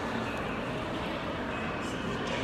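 Steady background hubbub of a large indoor hall, with faint distant voices.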